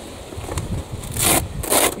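Velcro fastening on a fabric bag being pulled apart: two short rips, one right after the other, a little past a second in.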